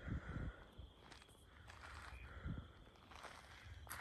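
Quiet outdoor ambience with a few soft, low footfalls on a gravel path, two right at the start and one about two and a half seconds in.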